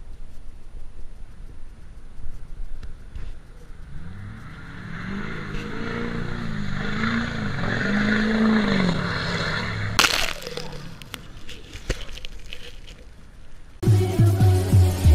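Pickup truck engine revving through a mud hole, its pitch rising and falling several times over the spray of muddy water. A sudden loud crack comes about ten seconds in, followed by a few smaller clicks.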